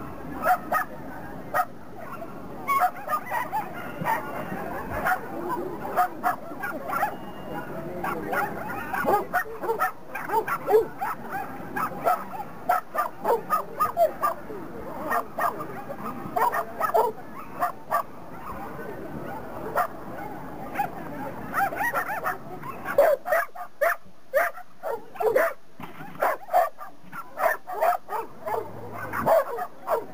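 A dog barking over and over in short, sharp barks, at times several a second.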